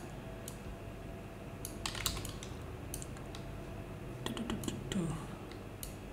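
Computer keyboard keys tapped in a few short clusters, about two seconds in and again near the end, over a steady low hum.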